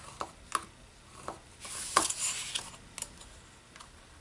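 Steel ruler and metal-tipped scoring stylus clicking and tapping as they are set down and shifted on cardstock, with a short scratchy scrape about two seconds in as the stylus is drawn along the ruler to score a fold line in the card.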